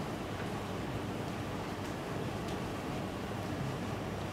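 Steady room noise: an even hiss over a low hum, with a couple of faint ticks about two seconds in.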